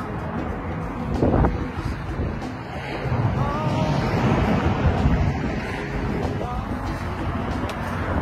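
Wind buffeting the microphone, loudest in a short gust about a second in and again in a longer swell from about three to six seconds.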